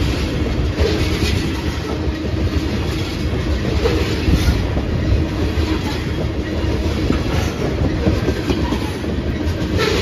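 Freight train tank cars rolling past close by: a steady rumble of steel wheels on rail, with a few sharp clicks as wheel sets cross rail joints.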